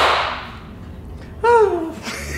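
A single sharp hand clap at the start, ringing out briefly in the room. About a second and a half in, a short voice sound falls in pitch.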